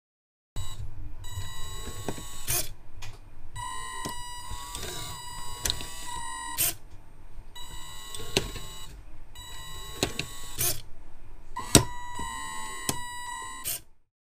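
Small electric motors and servos of a Makeblock and LEGO testing machine whining in short runs, each a steady electronic-sounding whine that wavers in pitch, with sharp clicks where the movements start and stop and brief pauses between them.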